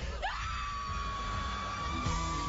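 People screaming together: a scream rises sharply about a quarter second in and is held on one high pitch.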